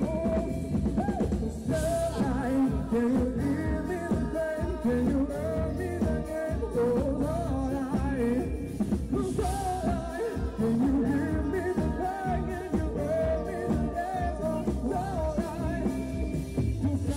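A live pop-rock band: a woman singing lead into a microphone over electric guitar and drums, with cymbal crashes now and then.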